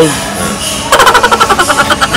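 A person laughing hard in a fast run of short, evenly spaced bursts, starting about a second in.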